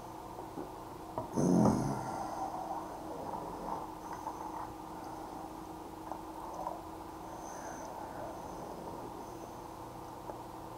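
A man's breathing close to the microphone, with one loud breath about a second and a half in, after a sip from a plastic cup. Quieter breaths and small rustles follow over a steady faint hum.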